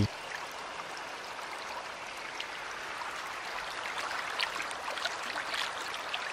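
Waterfall: a steady hiss of falling water spilling over rocks, with a few faint splashes.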